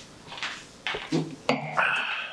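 Sipping from a stemmed wine glass, then the glass set down on a wooden table with a sudden clink and a short ring about one and a half seconds in.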